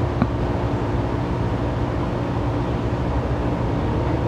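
Steady low machine hum with a hiss of noise over it, unchanging in level, with one faint click just after the start.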